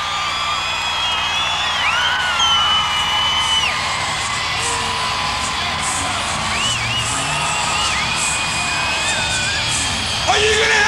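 Large concert crowd cheering steadily, with yells and whoops rising above it, including high held calls about two seconds in and again around seven seconds in.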